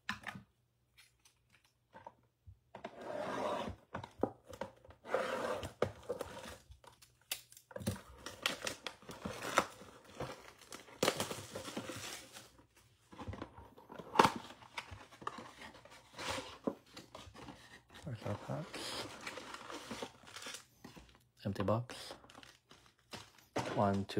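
Cardboard trading-card box being torn open, with its wrapping and foil card packs crinkling and rustling as they are handled and pulled out: irregular tearing and crinkling with sharp little clicks and taps.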